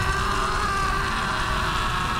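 Sustained film-score tones held over a steady low rumble of a large fire burning.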